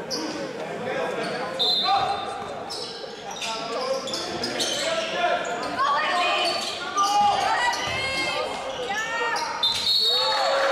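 Basketball bouncing on a sports-hall floor with repeated sharp thuds, sneakers squeaking on the court through the second half, and players' voices calling out, all echoing in a large hall.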